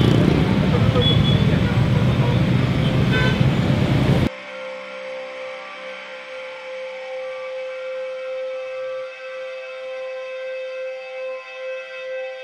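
Busy street noise with traffic and voices, cut off suddenly about four seconds in. Then quiet ambient music of long, steady held tones.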